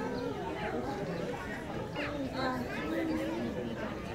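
Background chatter: several people talking over one another, with no words clear.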